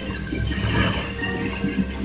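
Film soundtrack music, with a brief hiss a little over half a second in.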